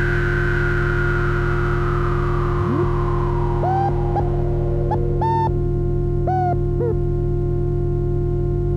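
DIY patchable synthesizer playing a steady low drone, with a high tone gliding slowly downward over the first few seconds. From the middle on come about seven short pitched blips that swoop up and hold briefly, like boops.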